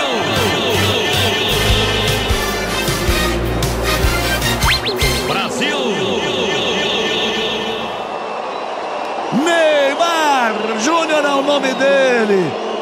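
Stadium goal celebration: music with a steady bass under a crowd's singing and cheering voices. From about nine seconds in, loud voices rise and fall in pitch.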